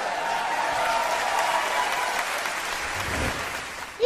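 Audience applauding after a punchline, dying down near the end.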